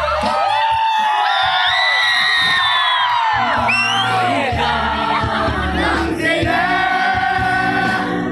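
A male singer performing a Zeme love song live into a handheld microphone over backing music, with crowd voices joining in. The bass of the backing music is missing for the first few seconds and comes back about three seconds in.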